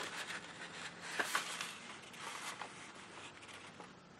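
A sheet of printer paper being handled and folded by hand: soft rustling with a few light taps and crinkles, growing fainter toward the end.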